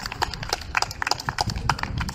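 Sparse applause from a small audience: separate hand claps at an uneven rate of several a second.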